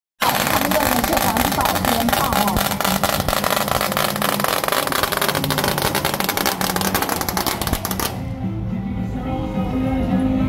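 A string of firecrackers going off in a rapid, continuous crackle that cuts off suddenly about eight seconds in, with loudspeaker voice and music faintly underneath.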